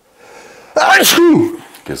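A man sneezing once, loudly: a short drawn-in breath, then the sneeze bursts out just under a second in and ends in a voiced tail.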